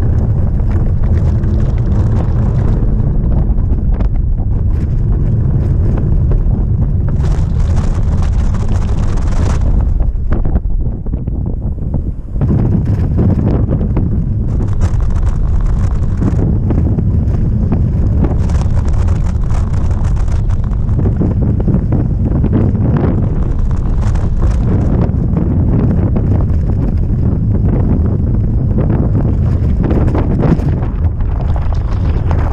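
Wind buffeting the camera microphone during a bike trail ride, a dense steady rumble with the ride's vehicle noise beneath it. It eases briefly about ten seconds in, then comes back.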